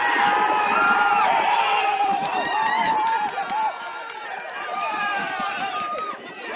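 Several men shouting and cheering over one another in celebration of a late winning goal. It is loudest for the first few seconds and eases a little after.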